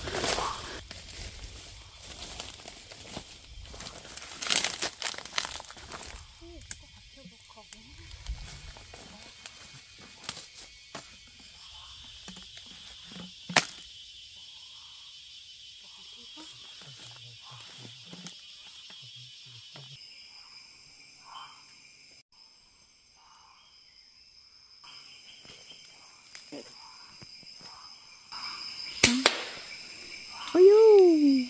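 Evening forest ambience with rustles and knocks in dry leaf litter in the first few seconds. A single sharp crack comes about 13 seconds in and a much louder one near the end, over insects buzzing steadily at a high pitch through the second half.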